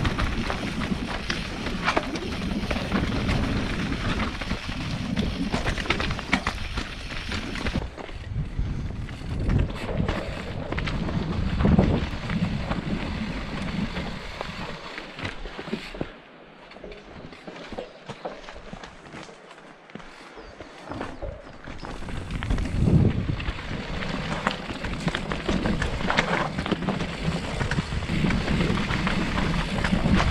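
Mountain bike riding down a rocky dirt singletrack: tyres rumbling and crunching over dirt and stones, the bike rattling with frequent sharp knocks from rocks and roots. It goes noticeably quieter for a few seconds past the middle, then picks up again.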